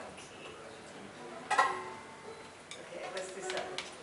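A lull in a string band jam: a single sharp, bright ringing note struck about a second and a half in, then scattered soft plucks and clicks as the players handle their instruments, with low voices in the background.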